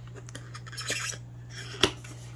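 Cardboard box end flap being worked open by hand: light scraping and rubbing about a second in, then a single sharp snap near the end as the tucked flap pulls free.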